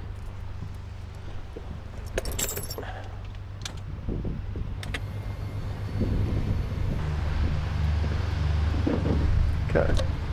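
A Beechcraft Bonanza B36TC's electric flap motor running as the flaps retract: a low hum that grows louder from about six seconds in. Before it come a brief metallic jingle about two seconds in and a couple of knocks.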